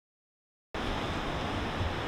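Silence, then about three-quarters of a second in, a sudden cut to a steady hiss of outdoor city background noise.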